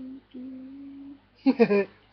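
A woman humming a simple tune with her mouth closed, in short level notes, the last one held for about a second. About one and a half seconds in, a louder short vocal sound with a falling pitch cuts in.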